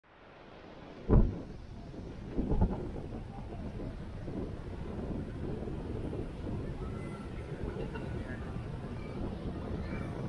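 Steady low rumble of wind buffeting the microphone on a ship's open deck, fading in at the start, with a brief thump a couple of seconds in.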